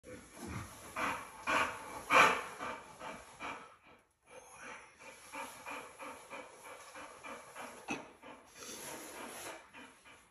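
A dog panting in quick, even breaths, with a few louder huffs in the first couple of seconds.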